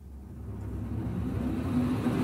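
Low rumble of a spaceship engine sound effect, swelling up from silence and growing steadily louder.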